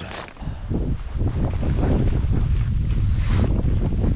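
Wind buffeting the microphone: a steady low rumble that swells about half a second in.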